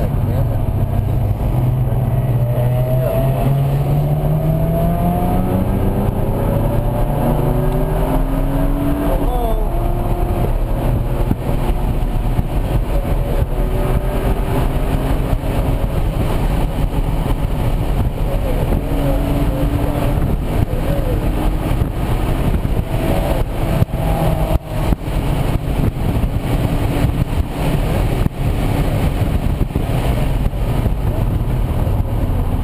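BMW Z4 M Coupe's S54 inline-six heard from inside the cabin under hard acceleration, its pitch climbing in long rising sweeps and falling back at each upshift, over heavy wind and road noise.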